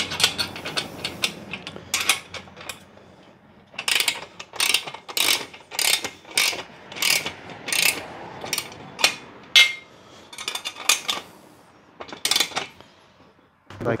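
Hand socket ratchet wrench clicking as it is swung back and forth to tighten a bolt on an aluminium mounting bracket. It gives a short burst of pawl clicks on each back-swing, about two a second through the middle, and stops shortly before the end.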